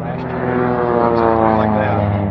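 I-TEC Maverick flying car's engine and propeller running steadily in flight, a loud drone with a higher tone that slowly slides down in pitch.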